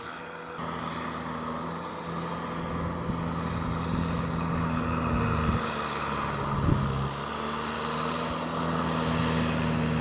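Kubota M6040SU tractor's four-cylinder diesel engine running steadily as it pushes a front blade and pulls a rotary tiller through paddy mud. It grows louder across the clip, with a single knock about two-thirds of the way through.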